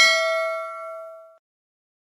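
A bell-ding sound effect from a subscribe-button animation's notification bell being clicked. It is one bright ding with several ringing tones that fade away over about a second and a half.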